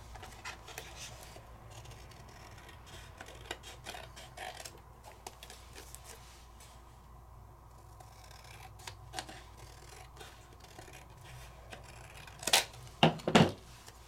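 Scissors slowly snipping through black cardstock, faint small cuts spread through. Near the end come a few louder, short knocks and rustles as the scissors are set down and the card is handled.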